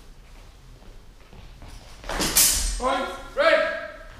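Quiet hall ambience, then a sudden loud noisy burst about halfway in, followed by two loud shouted calls in a raised voice, echoing in a large sports hall.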